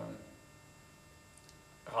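A faint, steady electrical mains hum in a pause between a man's words; his speech trails off at the start and resumes just before the end.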